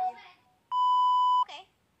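A single steady electronic beep, under a second long, starting partway in and cutting off sharply.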